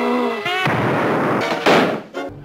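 Cartoon blast sound effects: a short laugh, then a noisy cannon-like blast about two-thirds of a second in and a louder one near the end.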